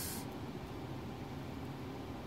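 Steady, even background hiss with no distinct clicks or other events.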